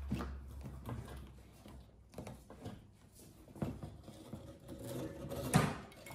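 Faint scraping and small clicks of a wire hook fishing inside a wall cavity for a drop string, with one sharper knock near the end.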